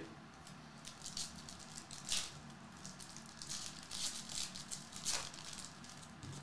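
Foil wrapper of a Topps Chrome trading-card pack crinkling as it is torn open: a soft run of small crackles, with sharper ones about two and five seconds in.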